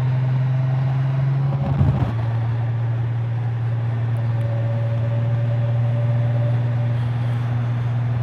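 2019 Honda Gold Wing Tour DCT's flat-six engine running at a steady cruise, a constant low drone under wind and road noise, with a brief change in the drone about two seconds in.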